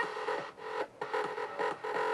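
Music played from a smartphone through the Lumilite CFL lantern's small built-in speaker, which is running off a 6 V rechargeable lead-acid battery and working.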